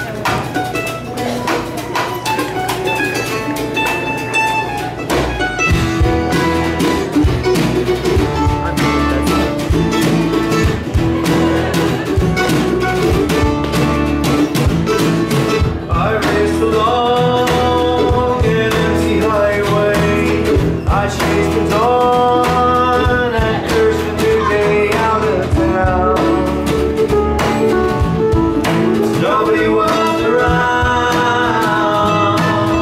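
A folk-rock band playing live on acoustic guitars and other strings with a drum. The low end and fuller band come in about five seconds in, and a melodic lead line rises over the strumming from about halfway through.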